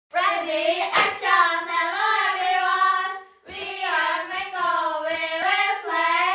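Three girls singing together, with a single sharp hand clap about a second in and a brief break in the singing about halfway through.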